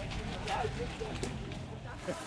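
Faint voices over steady outdoor background noise with a low rumble, with no distinct event standing out.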